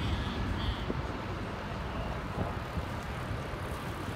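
City street background noise: a steady low rumble of traffic with no distinct single event.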